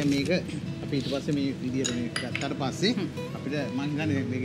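A utensil clinking and tapping against a bowl in scattered knocks as food is mixed, over light background music.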